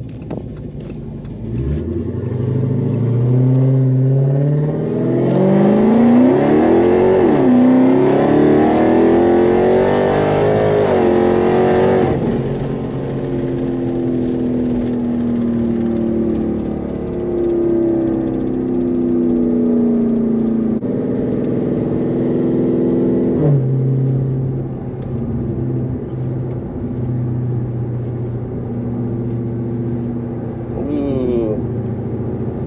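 Dodge Charger SRT Hellcat's supercharged 6.2-litre HEMI V8 accelerating from a stop, rising in pitch with a gear change about seven seconds in. It eases off at about twelve seconds into a steadier, slowly falling cruise and drops to a low steady note near the end, heard from inside the cabin.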